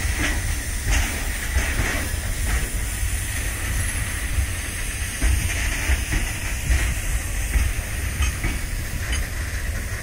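Loaded freight train of covered goods wagons rolling past, with a steady low rumble, a hiss and irregular clacks of wheels over the rail joints.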